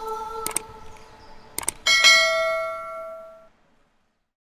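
The last held chord of a choir fades out, then a few mouse clicks and a bright bell ding that rings and dies away over about a second and a half: a subscribe-button overlay's click-and-bell sound effect.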